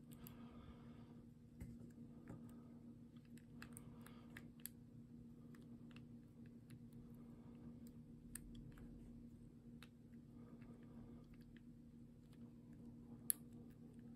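Faint, scattered metallic clicks of a short hook pick working the pins of a Squire No. 35 padlock under top-of-keyway tension, with one sharper click near the end; the lock is still resisting, a tough pick.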